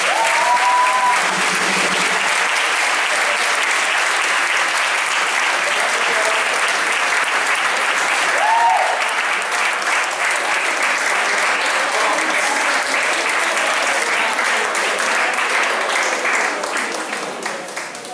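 An audience applauding steadily in a hall, with a few voices calling out over the clapping. The applause dies down near the end.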